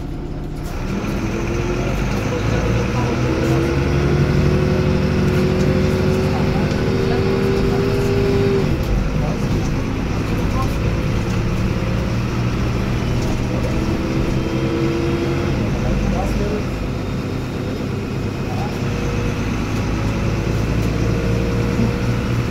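1998 MAN NL223 city bus heard from inside, its MAN D0826 LUH12 diesel engine and Voith D851.3 automatic gearbox pulling the bus away and accelerating. A whine rises steadily in pitch, drops off at a gear change about eight and a half seconds in, then rises again briefly later.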